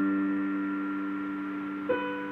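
Digital piano: a held chord slowly fading, with a new note struck near the end.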